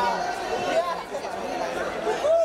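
Many voices talking and calling out over one another: the chatter of photographers at a red-carpet photo call.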